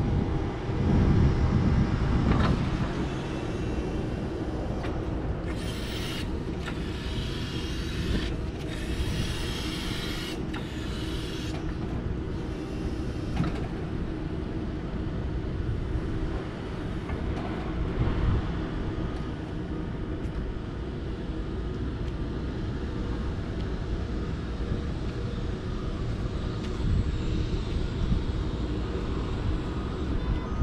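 LIFT HERO CPD30 80V lithium-ion electric forklift driving and working its forks: a steady low rumble, with hissing bursts between about 5 and 12 seconds in.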